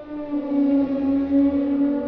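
Synthesized T-Rex roar sound effect from an augmented-reality dinosaur model: one long, steady, pitched roar that swells about half a second in.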